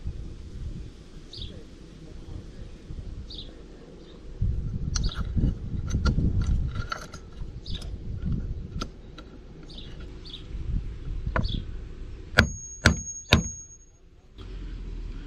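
Handling clicks as a heavy battery cable and lug are set into a spring-loaded hammer crimper. Near the end come three sharp hammer blows on the crimper's top, about half a second apart, with a brief high metallic ring, crimping the lug onto the negative cable.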